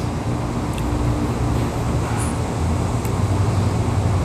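Steady low mechanical hum and rumble with a constant droning tone.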